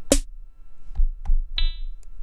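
Synthesized drum sounds from an Axoloti Core drum-machine patch played from a pad controller: a sharp bright hit right at the start, then a few low thuds and a short, buzzy pitched tone about one and a half seconds in, a new percussion voice being tried out.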